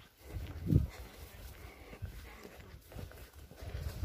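Footsteps on a dirt footpath, with an irregular low rumble on the microphone that swells sharply a little before one second in.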